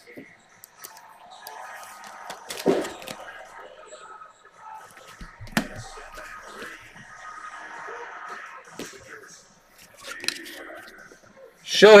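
Trading cards and plastic card sleeves being handled: soft rustling and sliding with a few sharp taps and clicks, the loudest about a third and halfway through.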